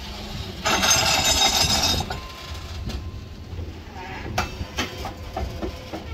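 Loaded grain hopper wagons rolling slowly past, steel wheels rumbling on the rails. About a second in comes a loud, harsh metallic burst lasting about a second, and near the end a few sharp clicks and knocks from the wheels and couplings.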